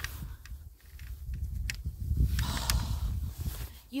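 Low, uneven rumbling and rustling on a handheld camera microphone as it is moved about, with a few sharp clicks and a brief hiss a little after two seconds.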